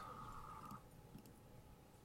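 Near silence: room tone, with a faint steady high tone that cuts off under a second in.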